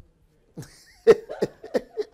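A man's voice in a run of short, breathy vocal bursts, about three a second, starting about half a second in.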